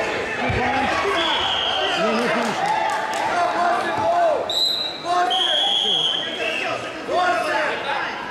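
Several men shouting throughout, in a large hall during a wrestling bout, with a dull thud of bodies on the wrestling mat about half a second in. A few short, high whistle blasts come in the middle.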